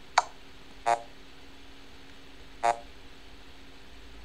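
Three short chess.com game sounds: a sharp click just after the start, then two brief pitched blips, about a second and nearly three seconds in.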